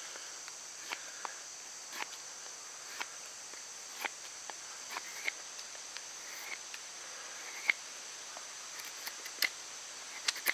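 A large knife shaving down a wooden bow drill spindle in short strokes, about one a second, each a brief sharp scrape or click. The loudest stroke comes near the end. A steady high insect trill runs underneath.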